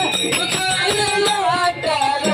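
A male singer's amplified voice singing a Kannada dollina pada folk song, with melodic glides, over steady beating percussion and jingling cymbals.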